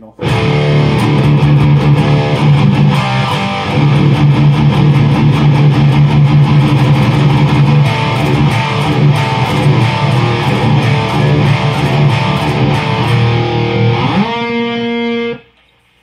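Distorted electric guitar playing a heavy metal riff through a Behringer TO800 Vintage Tube Overdrive pedal, with strong low notes. Near the end a note slides up in pitch and rings for about a second before being cut off.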